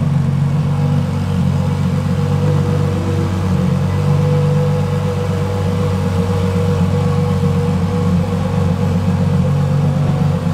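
Ferrari LaFerrari Aperta's V12 engine idling steadily.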